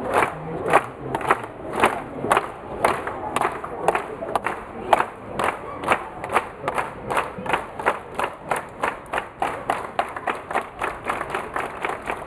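A large crowd clapping in unison, about two claps a second at first, speeding up to about three a second toward the end, with crowd voices and cheering underneath.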